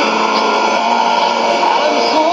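Music from a shortwave AM broadcast on 9775 kHz, playing through a Sony ICF-2001D receiver's speaker. The sound is thin, with no deep bass.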